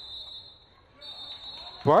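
A referee's whistle sounding in two long, steady blasts with a short break about half a second in, over faint stadium background noise.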